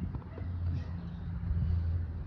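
A vehicle engine idling: a steady low hum, with a few faint clicks.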